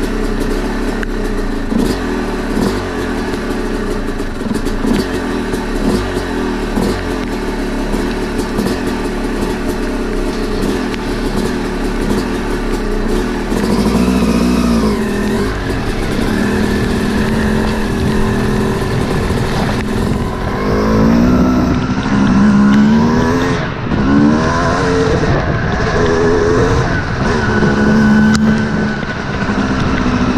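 Yamaha YZ250 two-stroke dirt bike engine, close to the microphone, running steadily at low revs for the first half. From about halfway in it revs up and down repeatedly, rising and falling in pitch, as the bike rides off down the dirt road.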